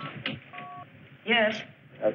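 Short two-tone electronic beep, like a telephone keypad tone, held for about a third of a second about half a second in, with a shorter blip of the same kind at the very start. A brief wavering, warbling sound follows just past a second in.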